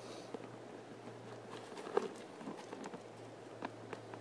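Crumpled aluminium foil crinkling under a hand as a foil cozy cover is handled, heard as scattered small clicks and ticks, the sharpest about two seconds in.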